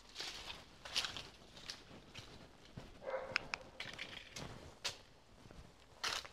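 Faint footsteps scuffing over a gritty, debris-strewn floor: a handful of irregular steps and small clicks, with one brief higher sound about three seconds in.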